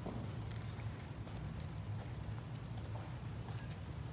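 Light, irregular knocks and footsteps of people walking forward in a line, one of them with a walker, over a steady low hum.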